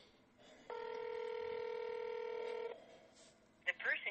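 Telephone ringback tone heard through the phone line: one steady ring about two seconds long, the sign that the call is ringing through to the line it was passed to. Near the end a recorded message voice begins.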